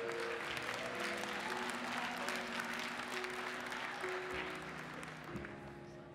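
Congregation applauding over soft instrumental background music with long held notes; the clapping thins out toward the end.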